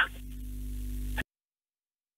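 Steady low electrical mains hum with faint hiss on the recording line, cutting off abruptly about a second in to dead silence.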